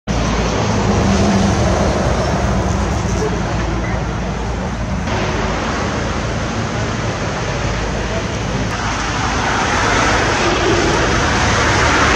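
Roadside traffic noise from passing cars, a steady rush of tyres and engines that grows louder toward the end.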